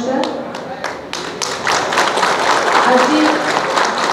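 A gathering clapping: a few separate claps at first, building about a second in to dense applause.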